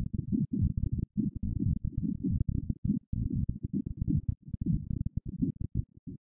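Low, rumbling electronic sound from a Plumbutter analog synthesizer, sampled and chopped by a Monome-controlled Max/MSP patch into rapid, stuttering pulses. Near the end the pulses break into short, sparser stabs that die away.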